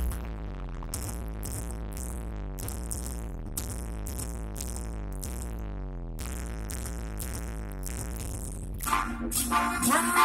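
Live band music heard from the crowd: a sparse passage of steady low bass under a regular high ticking beat. Near the end the full band comes in much louder and the singing starts.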